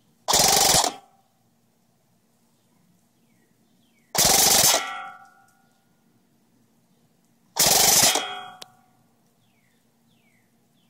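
Custom KWA SR10 electric airsoft rifle firing three short full-auto bursts of 0.20 g BBs, about half a second each, near the start, just after four seconds and near eight seconds, at about 24 rounds per second. The fast rate is that of the rifle on the 11.1 V LiPo battery. A brief ringing follows each burst.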